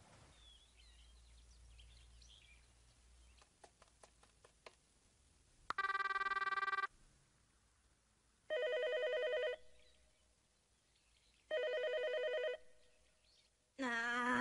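Telephone call going through: a few faint clicks, a single electronic beep about a second long, then an electronic telephone ringing twice, each ring about a second long with a warbling tone, about three seconds apart.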